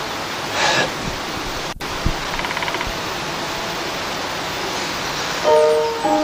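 A steady rushing noise, even across the range, with a brief dropout a little under two seconds in. Near the end, music with a held chord comes in over it.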